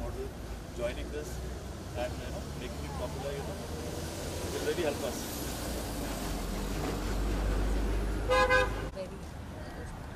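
Roadside traffic with a low vehicle rumble that swells for a few seconds, then a short, loud vehicle horn honk near the end.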